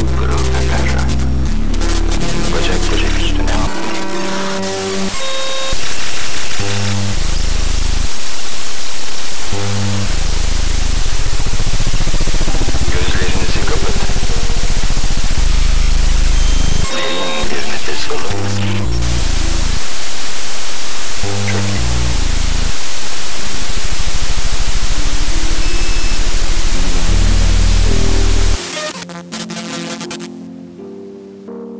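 Noise music: a loud, dense wall of static hiss with blocky low bass tones that switch abruptly on and off. The whole texture drops away suddenly shortly before the end.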